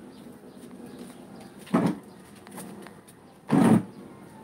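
Two short, loud rustling scrapes about two seconds apart, from a handheld phone being moved and handled close to its microphone, over a low steady background.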